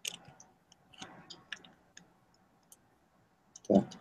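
Scattered light clicks, irregular and mostly in the first two seconds, with a voice starting just before the end.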